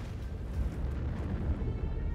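An armored vehicle exploding after a missile hit: a sudden blast at the very start, then a long, deep rumble.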